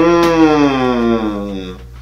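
A man's drawn-out vocal exclamation, one long held note whose pitch sags slowly, lasting nearly two seconds.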